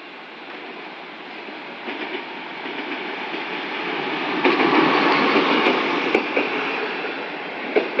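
EMD SDD7 diesel locomotive hauling a passenger train, growing steadily louder as it approaches and at its loudest as it passes close by, about four and a half seconds in. The coaches then roll past with sharp wheel clicks near the end.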